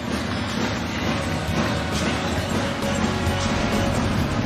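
Music playing steadily, with no commentary over it.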